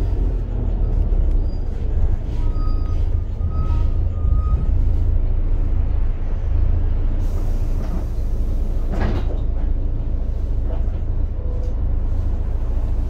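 Volvo B7TL double-decker bus heard from inside while driving: a low, steady drone from its straight-six diesel engine, with scattered rattles and knocks from the body and fittings. A faint high whine runs for about two seconds from a couple of seconds in, and a sharper knock comes about nine seconds in.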